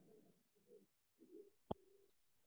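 Near silence: a few faint low murmuring sounds and a single sharp click near the end.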